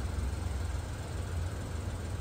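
Steady low rumble of a car engine idling, with no distinct events.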